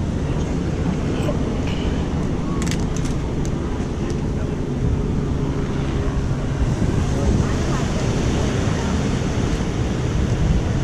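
Steady wind rumble on the microphone with the sea in the background, and a few faint, brief voices from people nearby.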